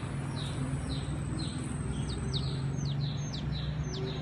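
Birds chirping: a short falling chirp repeats about three times a second throughout, joined in the middle by a run of sharper, hooked chirps, over a steady low hum.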